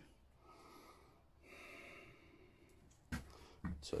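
Two faint breaths close to the microphone. A single sharp knock follows about three seconds in, and a man starts speaking right at the end.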